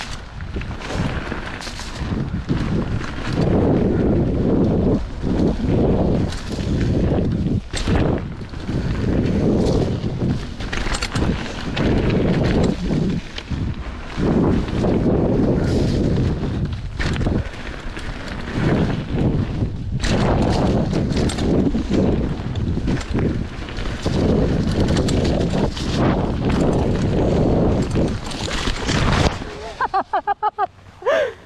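Mountain bike riding fast down a bumpy dirt trail: wind rushing over the microphone, with tyres rolling over dirt and the bike knocking and rattling over bumps. It ends in a crash near the end, after which it goes much quieter.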